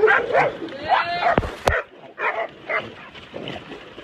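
Dogs barking and yipping in short, quick calls, with one long high whine about a second in, followed by two sharp clicks.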